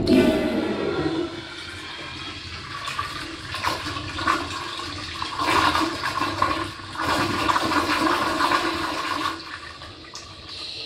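American Standard Instanto toilet bowl flushing on its flushometer valve: a sudden loud rush of water that surges and swirls down the bowl for about nine seconds, then drops away to a quieter run near the end.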